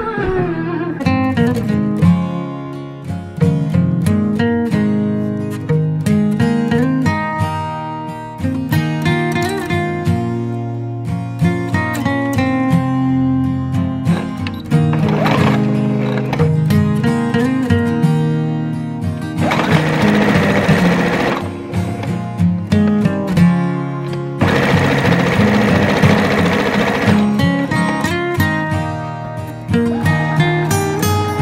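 Background music throughout, with an electric sewing machine running in two bursts of about two seconds each, around twenty and twenty-five seconds in.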